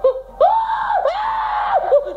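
A high-pitched, cartoonish falsetto voice of a puppet character screaming in alarm: a long scream that breaks once about a second in and carries on, with a short cry starting near the end.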